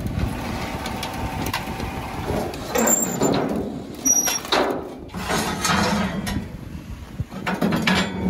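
A damaged Jeep being winched up onto a steel flatbed car trailer, its wheelless front corner on a wooden board skid. A motor runs under scraping, creaking and a few knocks and brief squeaks as it drags up the deck.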